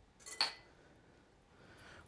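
A single short clink of a kitchen utensil against a dish, a little under half a second in.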